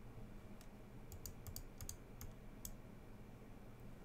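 Faint, irregular clicking at a computer, mouse and keyboard clicks, about ten in all, bunched in the first three seconds, over a faint steady room hum.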